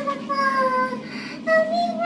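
A young child singing wordlessly in a high voice: one drawn-out note that slowly falls in pitch, then a second, higher note that rises near the end.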